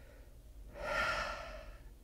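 A man's single audible breath, about a second long, starting just under a second in and fading before he speaks again.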